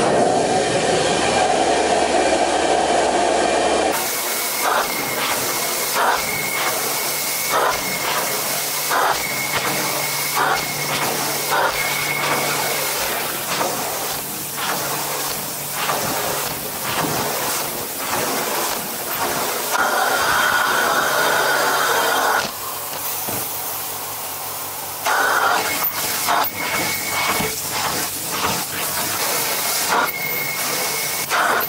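Hot water extraction carpet wand pulled across carpet in strokes: the steady suction hiss of the vacuum drawing water back up, with scattered short clicks. The sound changes abruptly about four seconds in and drops for a few seconds about three quarters through.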